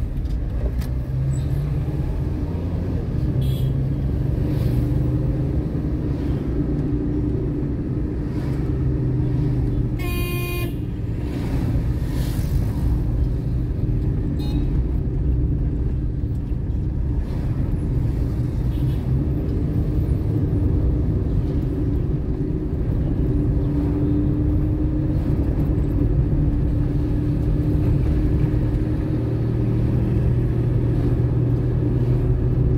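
Steady low drone of a car driving in city traffic, heard from inside the moving car, with one short car-horn toot about ten seconds in.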